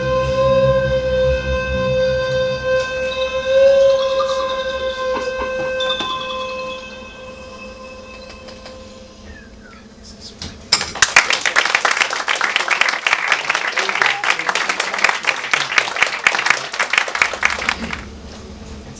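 A bowed hybrid string instrument holds a long high note over low bass notes and fades away. About eleven seconds in, audience applause breaks out and goes on for about six seconds.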